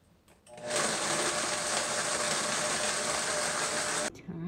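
A steady whirring noise, as of a small motor, comes in about half a second in and holds at an even level with a faint steady hum, then stops abruptly.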